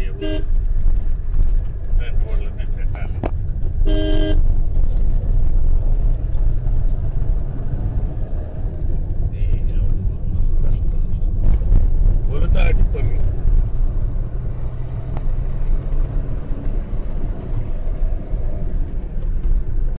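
Steady low rumble of a car driving on a dirt road, heard from inside the cabin. A vehicle horn gives one short honk about four seconds in.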